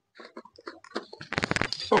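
A man's voice, quiet and broken at first with small clicks of handling between sounds, then louder talk near the end.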